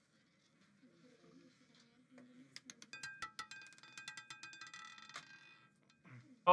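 Roulette ball clattering across the metal pocket separators of a spinning wheel as it drops toward its number: a faint, rapid run of clicks with a light ringing, lasting about two and a half seconds from halfway through, then stopping as the ball settles.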